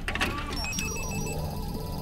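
A sci-fi electronic sound effect as a small device is slotted into a computer console: a sudden electronic sweep, then steady high electronic beeping tones as the console comes on. Background score music runs underneath.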